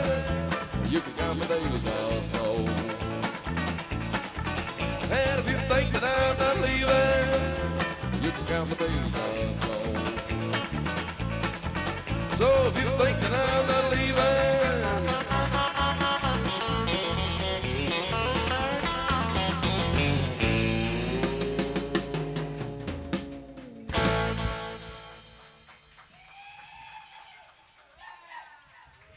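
Live country rock band playing with electric guitar and drums; the drums stop about 20 seconds in, the band holds a chord, hits a final accent near the 24-second mark and lets it ring out and fade as the song ends.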